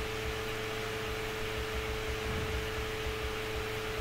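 Steady background hiss with a constant mid-pitched hum running under it, the noise floor of the lecture recording while nobody speaks.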